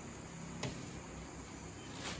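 A single light metallic knock from a round stainless-steel sieve tray being shifted by hand, over a steady background hiss.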